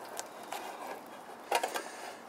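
Faint metal clicks and rattles of a clamp-on pan handle on a camp-stove frying pan as the pan is gripped and tilted, with a short burst of clatter about one and a half seconds in.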